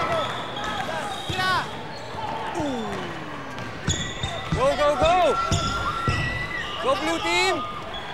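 A basketball bouncing on a concrete court, with sneakers squeaking in quick bursts as players run and cut.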